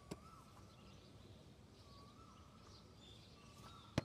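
Faint outdoor ambience with scattered bird chirps, a soft tap just after the start, and one sharp thud of a football at the very end.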